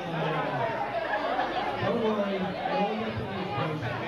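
Guests talking over one another: steady conversational babble from a crowd, with one nearer voice standing out.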